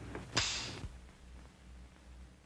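A revolver's hammer snapping down on an empty chamber during Russian roulette: one sharp click about a third of a second in, with a short fading hiss after it.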